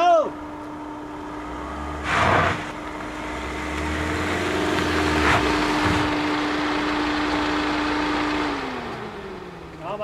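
A Maruti Suzuki Ciaz sedan rolls slowly up a dirt road toward the microphone, the noise of its tyres and engine growing as it nears. The engine note drops as it slows to a stop near the end. A brief rush of noise comes about two seconds in, and a short shout is heard at the very start.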